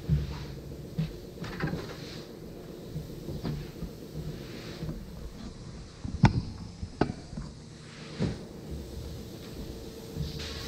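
Scattered knocks and clatter of workshop handling, a few at a time, with the sharpest crack about six seconds in.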